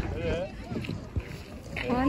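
Low wind rumble on the microphone with a faint child's voice early on, then a person starts talking near the end.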